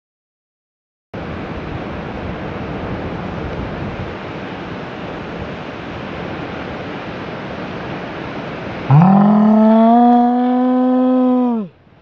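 Wind rushing over the microphone with surf noise behind it, starting about a second in. Near the end a long, loud yell from one person sweeps up in pitch, holds for nearly three seconds, then cuts off suddenly.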